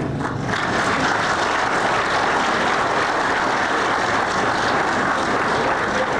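Audience applauding, a dense steady clapping that starts as the joke lands and holds for several seconds.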